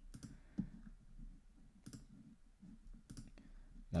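A handful of faint computer mouse clicks, spaced irregularly, over quiet room tone.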